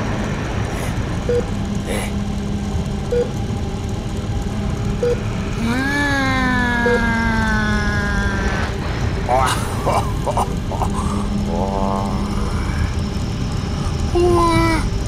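Drawn-out vocal 'ooh' exclamations, one long one falling in pitch about six seconds in and shorter ones around nine to ten seconds, over a steady low rumble. A short soft beep repeats about every two seconds through the first half.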